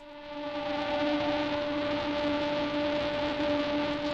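A steady buzzing hum with hiss over it, swelling during the first second and then holding unchanged.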